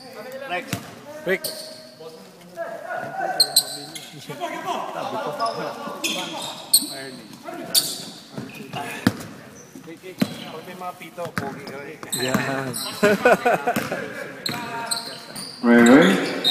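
A basketball bouncing on a hardwood gym floor, a scattering of sharp, irregular thuds, with people talking.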